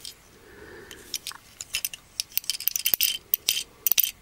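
A small diecast toy tractor turned over in the fingers, its metal body and plastic wheels and parts giving quick, irregular clicks and rattles that come thicker after about two seconds.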